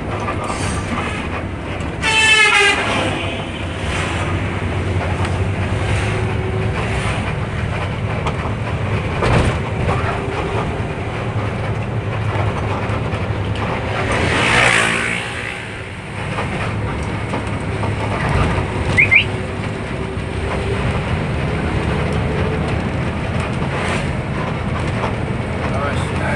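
Intercity bus engine running steadily under way, heard from inside the cabin as a continuous low rumble. A loud horn blast comes about two seconds in, and another loud, rising-and-falling swell comes around the middle.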